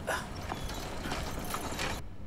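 A hand-pulled rickshaw being lifted by its shafts and pulled off, giving a few scattered knocks and creaks from its frame and wheels.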